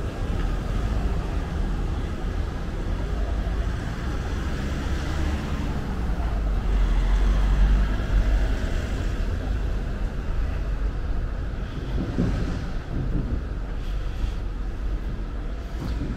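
Outdoor city street noise with wind on the microphone, a low rumble that swells about halfway through and then eases.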